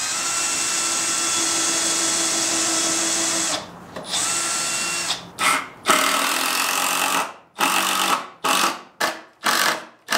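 Handheld power tool running steadily for about three and a half seconds, then started and stopped in a string of short trigger bursts.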